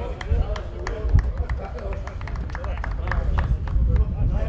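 Voices talking and calling out across a football pitch, over a low rumble and scattered sharp clicks.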